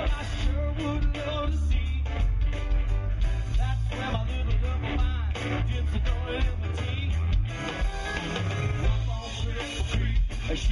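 A live band playing, with drums, bass guitar and electric keyboard and a strong bass.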